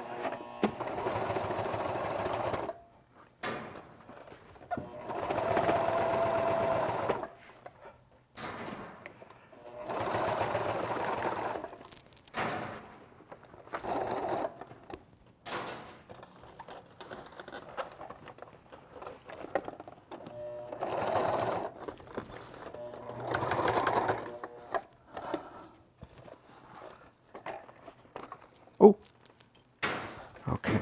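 Janome New Home sewing machine running in stop-start runs of one to three seconds, stitching through a thick padded fabric case. A single sharp knock sounds near the end.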